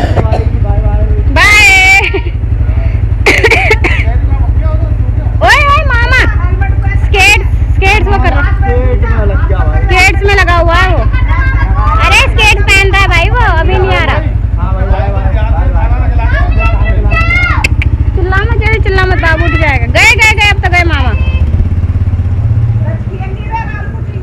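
A motorcycle engine idling with a steady low rumble, which rises briefly near the end, under loud voices.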